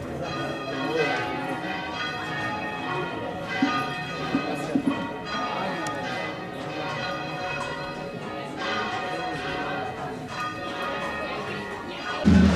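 Church bells pealing, several overlapping tones ringing on steadily. A few sharp clicks come about four to five seconds in.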